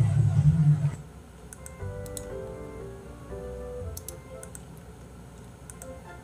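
Soft background music with sustained piano-like notes, with a few sharp clicks from a computer keyboard scattered through it. In the first second a louder low rumbling noise runs and stops suddenly about a second in.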